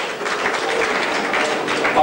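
Audience applauding in a hall.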